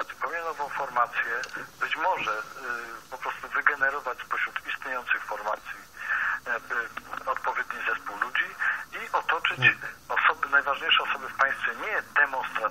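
Continuous speech only, with a thin, narrow-band sound like a radio broadcast.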